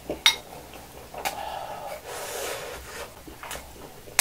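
Close-miked eating noises: a spoon clicks sharply against a small glass bowl, then about a second and a half of scraping and chewing noise as fried rice is scooped and eaten.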